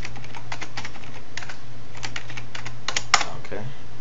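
Typing on a computer keyboard: irregular runs of quick keystrokes, then one louder stroke about three seconds in as the Enter key sends the command. A steady low hum lies underneath.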